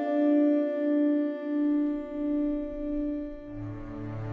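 Slow film-score cue of bowed strings played on a guitar viol: a held chord of pure notes with no vibrato, its main note swelling in slow, even pulses. Deeper bass notes come in near the end.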